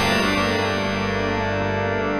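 Yamaha DX7 IID FM synthesizer holding a sustained chord that was struck just before, its many tones ringing on steadily, recorded direct with no processing.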